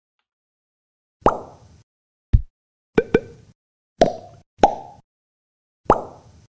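Outro sound effects: a series of about seven short, sharp hits at irregular intervals, two in quick succession near the middle, several with a brief pitched ring as they die away; the last coincides with the 'Thank you' title card appearing.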